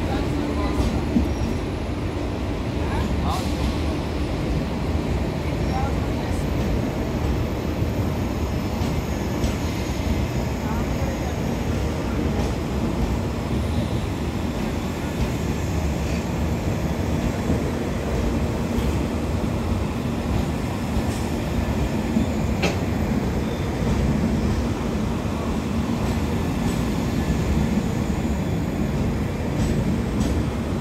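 A passenger train of LHB coaches rolling in along the platform: a steady rumble of wheels on rail, with a few sharp clicks.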